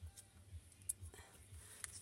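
Faint clicks and light handling of paper as a punched paper circle is peeled away from a post-it note, a few separate ticks spread over the two seconds.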